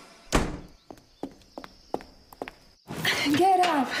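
A door shutting with one heavy thunk, then quick light footsteps on a hard floor, about three steps a second. A voice starts speaking near the end.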